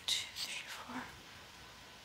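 A woman's soft whispering under her breath in the first second, then quiet room tone.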